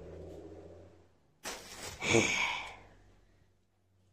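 A person's breathy sigh, falling in pitch, about two seconds in. Before it, faint room hum cuts off to dead silence at an edit.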